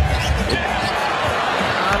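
A basketball being dribbled on a hardwood court, a series of low bounces over the steady noise of an arena crowd.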